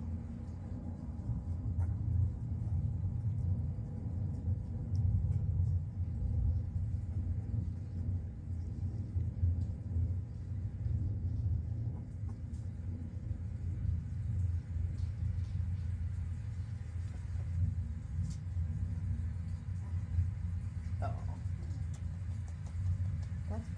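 A steady low rumble that rises and falls slightly throughout, with a brief faint squeak near the end.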